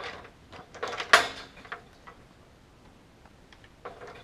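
Extension ladder being shifted and set against a wooden post: a few short knocks and rattles, the loudest about a second in, then quieter.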